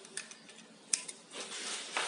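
Aerosol lubricant can with a red straw nozzle: a couple of light clicks, then a short hiss of spray from about a second and a half in, wetting the threaded hole before a thread insert goes in.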